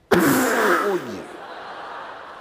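A performer makes a loud comic fart noise with his mouth pressed against his hand, spluttering with a pitch that falls over about a second. The audience then laughs more quietly underneath.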